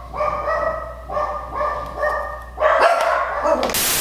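A dog whining in about five short, high, steady-pitched cries one after another. A loud, even hiss sets in near the end.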